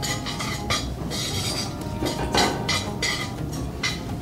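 A utensil stirring onions and cracked wheat sautéing in olive oil in a pot, with repeated irregular clinks and scrapes against the pot.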